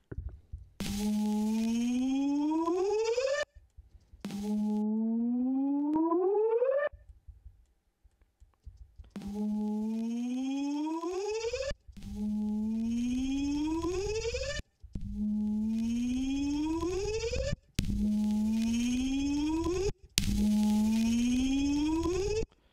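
Synthesized electronic tone made from a single 'bip' sample and run through Xfer OTT multiband compression, played back seven times. Each note lasts about two and a half seconds, holding a low pitch and then gliding upward.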